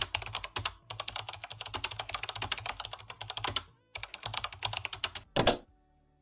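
Fast typing on a laptop keyboard: a dense run of keystroke clicks with a short pause about two thirds of the way in. One louder keystroke comes just before it stops.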